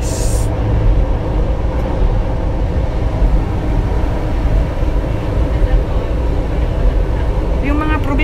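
Steady low rumble of a Manila MRT Line 3 train running along the line, heard from inside the carriage, with a brief hiss at the very start.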